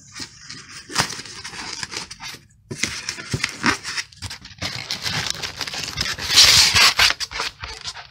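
Polystyrene foam packing being scraped and pulled out of a cardboard box: irregular rubbing, scraping and crackling with sharp clicks, loudest about six and a half seconds in.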